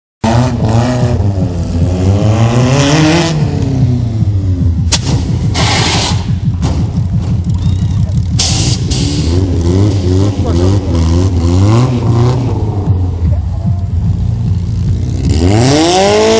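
A car engine revving up and down over and over. Several sharp bangs come in the middle of the passage.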